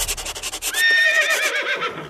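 A horse whinnying: one long neigh that starts just under a second in, its pitch quavering rapidly as it slowly falls. It comes after a short run of quick clicks.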